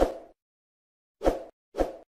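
Three short pop sound effects from an animated subscribe-button graphic: one at the start, then two more close together about half a second apart. Each is a quick plop with a low thump that dies away at once.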